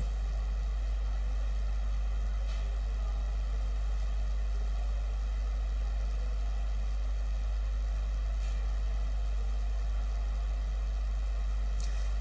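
A steady low electrical hum with a faint hiss underneath, unchanging throughout.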